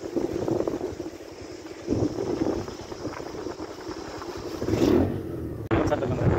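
Vehicle running along a road, a steady rumble of engine and road noise that swells near the end. The sound breaks off suddenly just before the end and goes on as a different recording.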